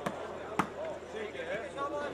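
A volleyball struck twice by hand, two sharp smacks about half a second apart, the second the louder, over a crowd's background chatter.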